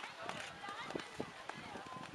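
Indistinct talk of onlookers, with dull thuds of a horse cantering on a sand arena.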